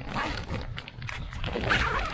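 Nylon tent fabric rustling and its coil zipper being handled, in short scratchy strokes.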